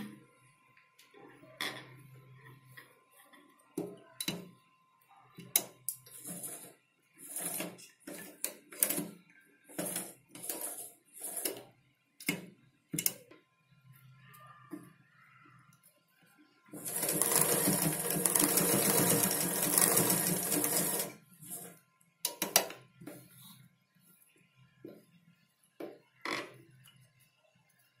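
A black domestic sewing machine runs in one continuous burst of about four seconds, stitching folded piping onto a neck patch. Around it are short rustles and clicks of fabric being handled and positioned under the presser foot.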